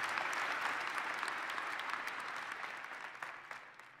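Large auditorium audience applauding, the clapping fading away steadily and dying out near the end.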